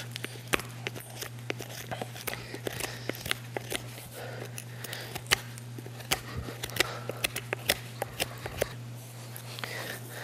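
Hoof knife scraping across a horse's sole in many short, irregular strokes, paring off dead, chalky sole to smooth it, over a steady low hum.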